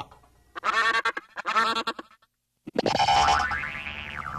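Pitch-edited cartoon sound effects from the Klasky Csupo logo: two short pitched calls with a wavering pitch, then, after a brief silence, a longer sound that slides down in pitch.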